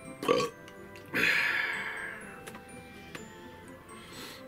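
A man's short, loud burp from drinking down a mulled drink, followed about a second later by a long breath out. Soft background music runs underneath.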